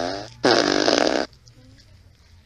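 Fart sound effect: the end of one long, slightly falling fart noise about a third of a second in, then a second one lasting under a second.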